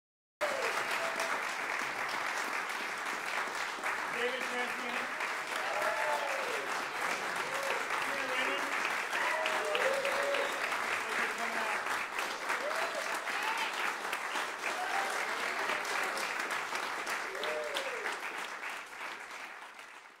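Concert audience applauding steadily, with scattered voices calling out and cheering over the clapping. The applause fades away near the end.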